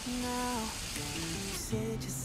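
Shrimp, onion and green pepper sizzling as they fry in a hammered iron frying pan, under background music with a few held notes.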